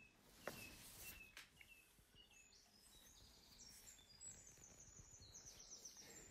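Near silence with faint bird chirps: short down-slurred notes repeated in the first half, then higher, quicker twittering toward the end.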